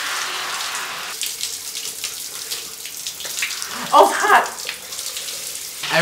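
Hot shower running, its spray hissing steadily as water splashes over a person's face and shoulders; the sound thins a little about a second in.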